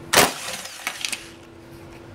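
Socket wrench on a 10 mm fender bolt: one sharp crack about a quarter second in, then a few lighter clicks as the bolt is worked loose.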